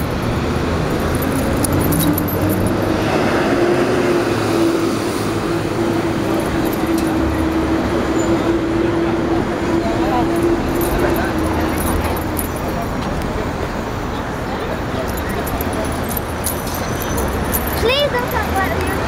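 Busy city-street traffic noise, a steady wash of passing cars, with a steady engine hum that holds for several seconds from a couple of seconds in.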